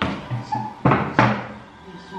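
A dining chair being moved at a table, with two sharp knocks about a second in.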